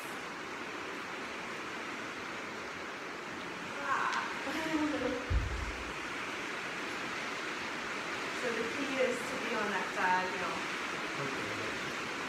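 Steady background hiss, with two short stretches of quiet, unclear voice sounds and a single low thump about five seconds in.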